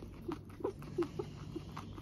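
A young teddy guinea pig chewing food while making short, soft popping 'pu-pu' calls, about three a second, mixed with small chewing clicks.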